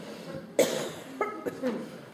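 A single cough about half a second in, followed by a few short voice sounds.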